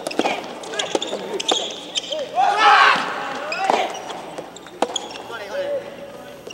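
Soft tennis rally in an indoor hall: several sharp pocks of the rubber ball off rackets and the court. Loud shouting breaks out about two and a half seconds in.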